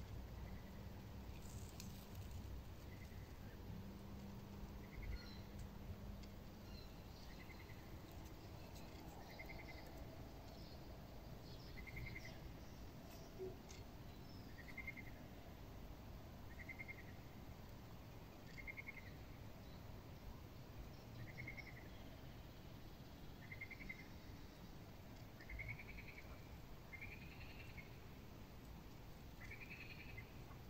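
Faint, repeated short chirping calls from a small animal, one every second or two, growing louder and closer together near the end, over a faint low rumble.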